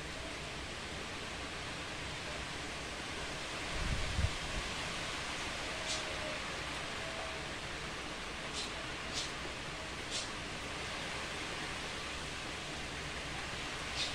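Heavy rain falling steadily, a continuous hiss. A low thump comes about four seconds in, and a few faint ticks follow later.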